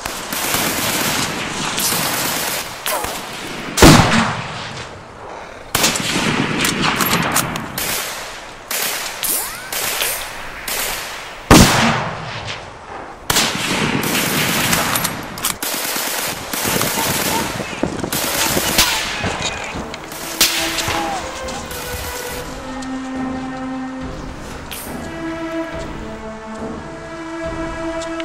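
Battle gunfire: long stretches of rapid automatic fire mixed with single rifle shots, with two especially loud shots, one about four seconds in and one near the middle. Music with sustained tones fades in over the last few seconds as the shooting thins out.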